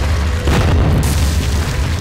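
A deep boom-and-crash sound effect of a wall bursting apart, hitting about half a second in, laid over music with a heavy steady bass.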